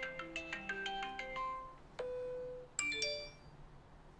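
Smartphone ringtone for an incoming video call, a melody of quick marimba-like notes that stops just before two seconds in. A tap with a short held tone follows, then a brief rising three-note chime as the call is ended.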